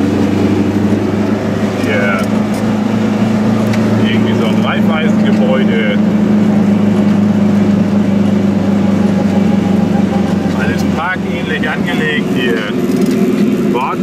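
Goggomobil microcar's air-cooled two-stroke twin engine running steadily under way, heard loud from inside the small car's cabin.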